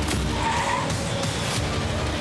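A van driving at speed with its tyres squealing on the road, under music.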